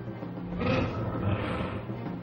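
A large cartoon rhino-like alien beast growling, with two rough breathy bursts about a second in and just after.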